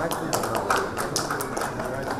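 Light, scattered handclapping: a sparse patter of separate claps rather than full applause.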